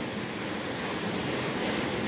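Steady, even hiss of background noise, with no distinct event.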